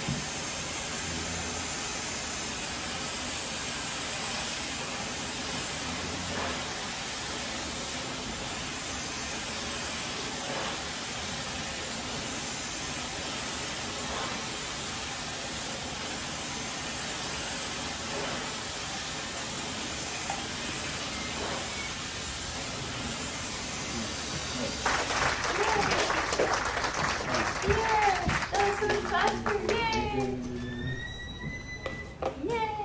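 Handheld hair dryer blowing steadily on wet hair, an even rushing hiss that stops about five seconds before the end. Voices and clattering follow.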